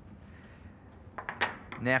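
A few light clicks and clinks of hand tools, including a screwdriver, being set down on a workbench about a second in, one with a brief metallic ring, after a moment of quiet room tone.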